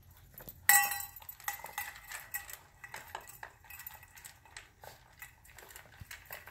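A stainless steel food bowl clanking as a French bulldog eats fast from it. There is one loud ringing clang about a second in, then a quick run of small clinks and knocks.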